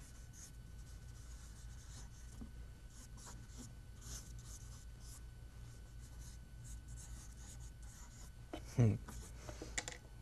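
Faint scratching of a drawing tool on paper in short, irregular strokes, over a steady low hum. A brief voice sound comes near the end.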